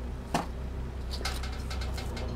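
Handling noise: one light knock about a third of a second in, then a few faint clicks and rustles as a plastic plant pot is moved about, over a steady low hum.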